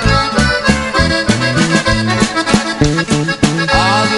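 Norteño band playing an instrumental break in a corrido: a button accordion runs a fast melody over a stepping bass line and a steady drum beat.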